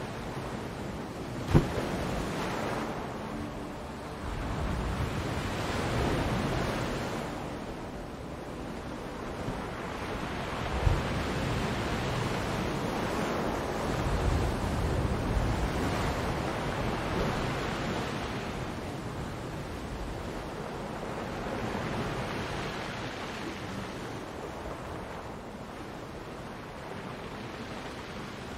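Ocean waves washing in, a steady rush of surf that swells and fades every several seconds. Two brief sharp clicks stand out, about one and a half seconds in and again near eleven seconds.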